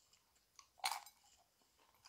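Tortilla chip with guacamole being bitten and chewed, with a crisp crunch about a second in amid faint chewing.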